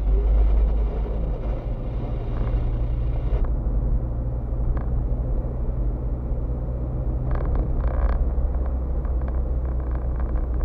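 Car driving, heard from inside the cabin: a steady low engine and road hum, with a few short rattles about seven to eight seconds in.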